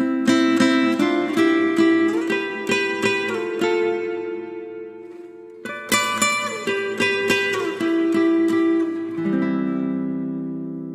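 Acoustic guitar music, plucked and strummed notes from the very start, with a fresh run of notes about six seconds in and ringing notes near the end.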